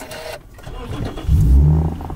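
A Lexus car's engine being started by push-button: the starter cranks for about a second, then the engine catches and flares up to a steady fast idle.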